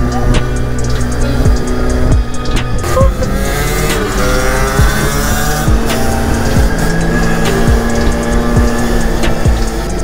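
Several 50cc two-stroke moped and scooter engines running at speed, their pitch rising and falling as they rev, with background music over them.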